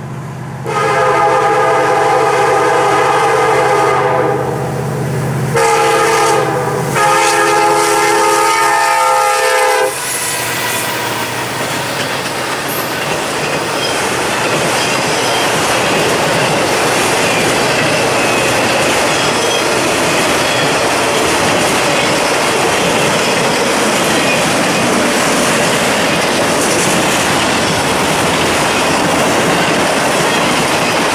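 Air horn of a Norfolk Southern SD70M-2 diesel locomotive sounding three blasts for a grade crossing, the last ending about ten seconds in. The locomotives then pass, and a long train of autorack cars rolls by with steady wheel clatter on the rails.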